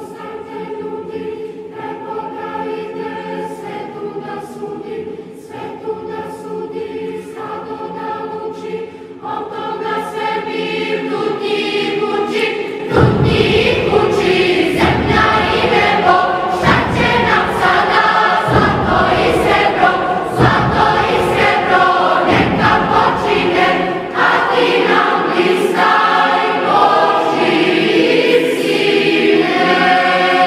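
A choir sings a religious song in Serbo-Croatian in held, sustained chords. About 13 seconds in, a deep, heavy accompaniment comes in and the music swells louder.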